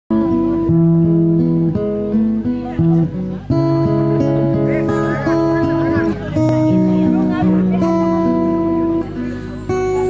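Acoustic guitar playing a chord intro, the chords changing about every second and ringing on, with two brief drops in level between phrases.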